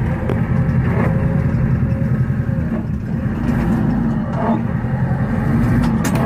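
Tractor engine running steadily under load while its front loader pushes snow, with a few faint knocks.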